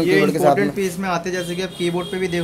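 A man talking continuously: speech only.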